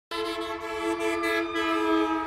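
A single steady, held chord of several tones at an unchanging pitch, sounding like a horn.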